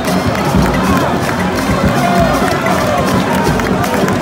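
Football stadium crowd: a steady, loud din of fans, with music and voices mixed in.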